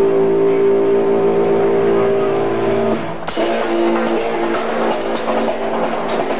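Metal band soundchecking on electric guitar and drums. A held, ringing guitar chord breaks off about three seconds in, followed by shorter guitar notes over drum hits.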